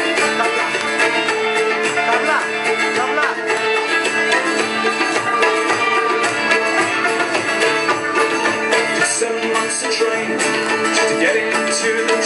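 Live band playing an instrumental passage of a folk song: strummed acoustic guitar with other plucked string instruments, dense and steady.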